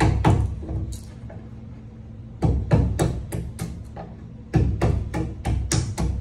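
Wooden mallet striking a wood chisel in quick, evenly spaced blows, in short runs with brief pauses, paring a shallow seat for a joist hanger into rough-cut timber. Background music plays under the strikes.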